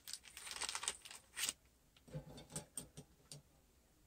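Fingers rummaging in a small plastic zip-lock bag of electronic components: faint crinkling of the plastic and small clicks of parts knocking together, in irregular bursts that thin out after the first couple of seconds.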